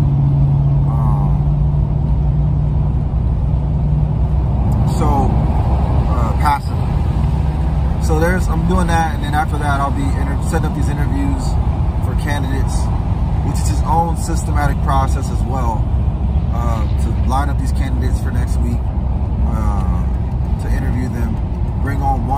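Steady low rumble of a car's engine and road noise heard from inside the cabin, with a voice talking at intervals over it.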